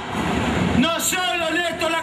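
Speech only: a man giving a speech into microphones.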